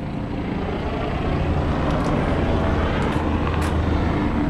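The 1971 Camaro's 350 small-block V8 idling steadily through its dual straight-pipe exhaust, a low, even rumble.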